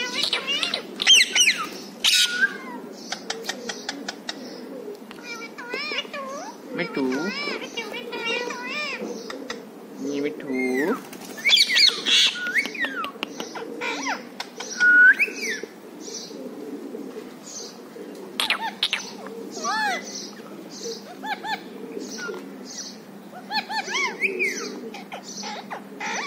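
Several caged rose-ringed parakeets (Indian ringnecks) calling: a busy run of short chirps and squawks that bend up and down in pitch, mixed with bits of speech-like mimicked talk.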